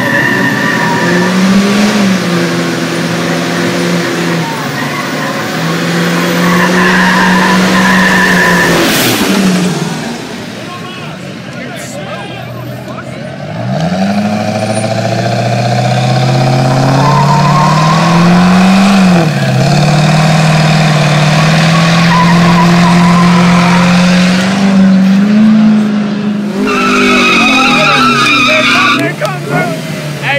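A car engine revved hard and held at high revs, with squealing tyres, during a street burnout. The revs climb and fall back several times, and the sound drops away briefly about ten seconds in before rising again.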